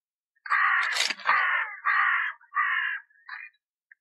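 A crow cawing five times in quick succession, the last call fainter than the rest.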